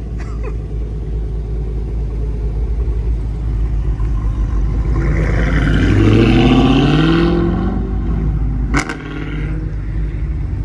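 Dodge Challenger 392's 6.4-litre HEMI V8 idling with a steady low rumble, then revving up as the car pulls away, its pitch rising for about two seconds in the middle.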